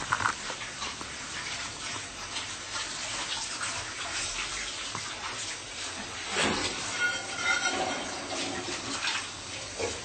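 Water running steadily from a kitchen tap into a sink, with a few faint clicks and knocks over it.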